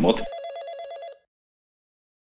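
Electronic telephone ring: a short, rapidly warbling tone lasting about a second, cut off suddenly.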